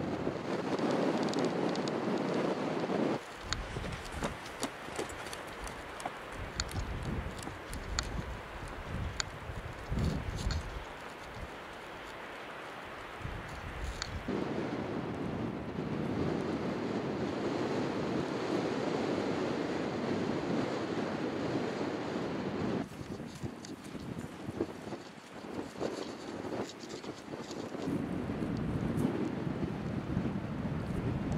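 Wind buffeting the microphone: a rushing noise that rises and falls, shifting abruptly in level a few times, with scattered faint clicks.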